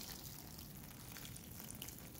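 Water sprinkling from the rose of a plastic watering can onto loose potting soil in a pot, a faint, steady pour.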